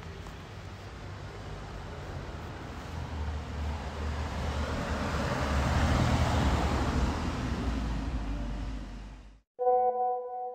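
A car passing by, its road noise and engine rumble rising to a peak about six seconds in and then easing off before cutting out suddenly. Just after, near the end, a short phone message notification chime sounds.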